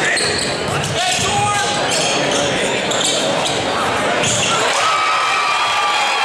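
Basketball game in a large, echoing gym: steady crowd chatter, a ball bouncing on the hardwood and short, high sneaker squeaks on the court floor.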